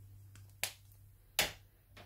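Two sharp clicks a little under a second apart, from a felt-tip pen being handled and put away after colouring, over a faint low hum.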